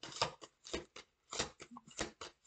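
A deck of oracle cards being shuffled by hand: a quick, irregular run of short papery card-on-card snaps.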